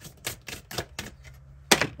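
A deck of oracle cards being shuffled by hand, a quick run of light card clicks, then one louder slap near the end as a card lands on the table.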